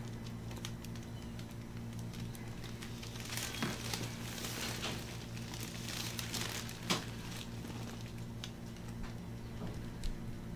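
Gloved hands massaging oiled skin: scattered soft rubbing and crinkling sounds of the gloves and table covering, over a steady low hum, with one sharper click about seven seconds in.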